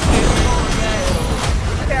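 Film sound effects of a burning tandem-rotor helicopter going down and crashing: a sudden, loud, sustained rush of engine and crash noise with a faint falling whine in it.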